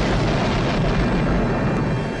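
Science-fiction explosion sound effect: a long, deep blast as a starship detonates inside a giant planet-killing machine.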